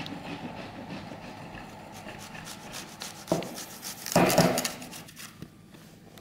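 A brown button mushroom being grated on a stainless steel box grater, a steady scraping rub of the mushroom against the metal. There is a sharp knock a little over three seconds in and a louder clatter just after four seconds.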